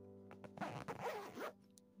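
Zip on a fabric travel bag being pulled, a scratchy run lasting about a second, over steady background music.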